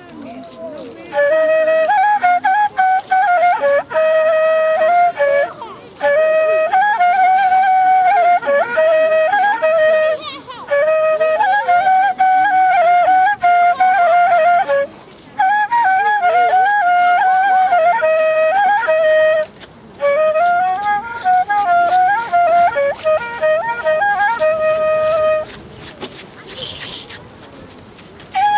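A whistle flute (fipple type, blown through a mouthpiece held in the lips) playing a quick melody full of turns and trills. It comes in phrases of four to five seconds with short breaks for breath between them, starting about a second in and stopping shortly before the end.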